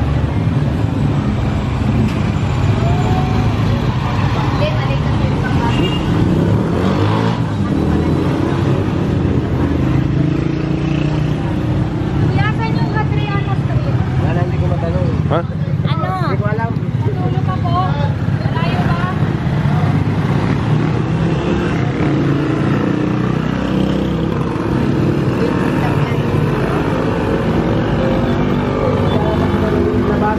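Close-range street traffic of small motorcycles and motorcycle-sidecar tricycles: engines running and pulling away in a continuous drone. Voices can be heard in the background.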